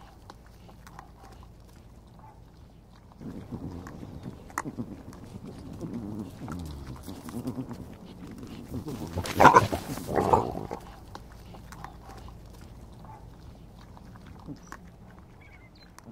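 Collared peccaries (javelinas) grunting and growling among themselves, rising to a loud, short outburst about nine to ten seconds in: the squabbling of a javelina fight.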